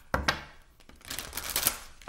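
A deck of oracle cards shuffled by hand: two sharp taps, then about a second in a quick run of flicking, slapping card sounds.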